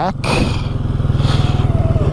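Can-Am Outlander 700 ATV's single-cylinder engine running steadily, with an even firing pulse.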